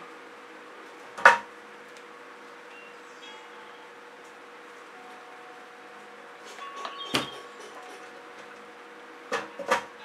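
Objects being handled on a worktable: one sharp knock about a second in, then a few lighter knocks and rustles later, over a steady low electrical hum.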